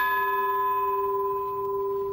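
Ship's bell struck once and left ringing: a single clear, sustained ring that fades slowly.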